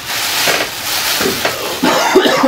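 Rustling and crinkling of paper taco wrappers and plastic takeout bags being handled.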